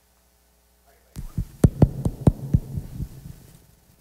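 Microphone handling noise: a quick run of dull thumps and knocks, about eight in two seconds, starting about a second in after dead silence, over a low hum.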